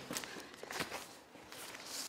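A few faint footsteps on a hard floor, irregularly spaced.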